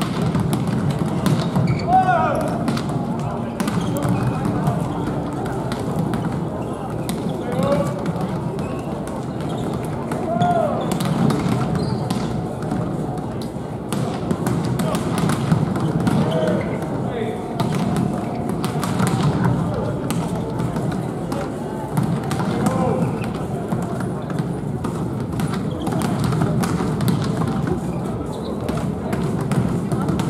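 Volleyballs being struck and bounced in warm-up passing, a run of short sharp hits at irregular intervals over the steady murmur of a crowd in an indoor arena.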